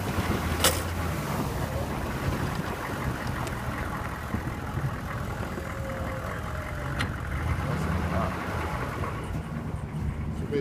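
GMC Sierra 2500 plow truck creeping forward in first gear, its engine running steadily under a constant rush of snow being pushed and scraped along by the Meyers plow blade. Two sharp clicks, one near the start and one about seven seconds in.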